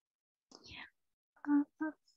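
A person's voice over a call: a short breathy sound about half a second in, then two short spoken syllables near the end.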